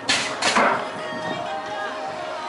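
BMX start gate dropping: a loud metal slam right at the start, a second hit about half a second later as the riders roll off, then a steady held tone.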